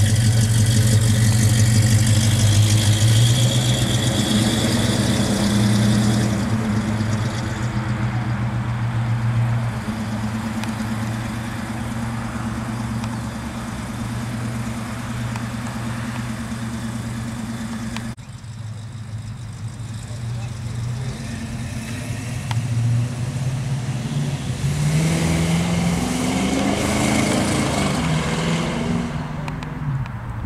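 1969 Ford Mustang Mach 1's V8 engine running at a steady idle, cutting off abruptly about two-thirds of the way in. Near the end it rises in pitch as the car accelerates away.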